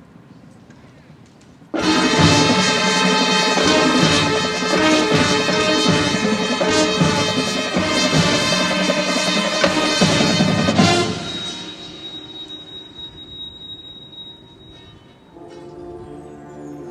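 High school marching band with brass and front-ensemble percussion opening its show. After about two seconds of near-quiet, the full band comes in suddenly and loudly for about nine seconds, then drops to a softer passage with a single high held tone, and a new quieter entrance begins near the end.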